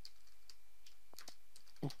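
Computer keyboard keys being typed, a handful of faint separate key clicks at an uneven pace.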